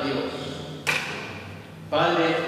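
A man's voice reading aloud, broken a little under a second in by a single sharp knock that rings out briefly.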